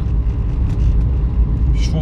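Cabin noise of a car being driven: a steady low rumble of engine and road, heard from inside.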